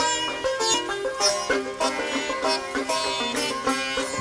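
Folk-rock instrumental passage led by sitar, a run of plucked notes with sharp attacks over other plucked strings. The low double bass drops out and comes back in right at the end.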